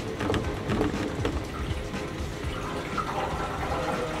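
Distilled water glugging out of an upturned plastic jug into the filler neck of an empty steel motorcycle fuel tank, filling the tank to rinse out the vinegar and rust left from de-rusting.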